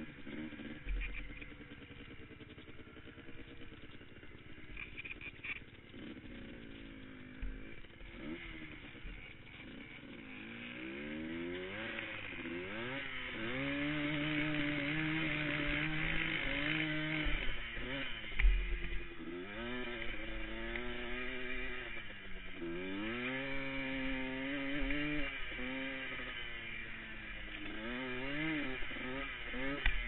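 Single-cylinder Yamaha ATV engine heard from the rider's seat while riding a sandy trail. It runs quieter and more evenly for the first several seconds, then revs up and down again and again, its pitch climbing and falling, loudest about halfway through.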